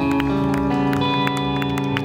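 Live neo-rockabilly band holding a chord: electric guitar and upright bass ring out steadily while drum and cymbal hits strike over them. The chord stops near the end.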